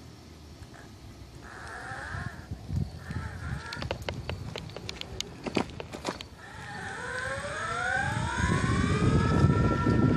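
Electric mountainboard's motors whining as the board accelerates in first speed. The whine rises in pitch and levels off, over a growing rumble of the pneumatic tyres on pavement. A few sharp clicks sound partway through.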